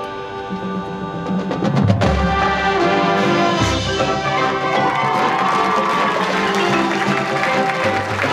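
High school marching band playing: sustained wind chords over percussion. A quickening run of sharp strikes about a second in leads to a heavy low hit at about two seconds, and a second low hit follows just before four seconds.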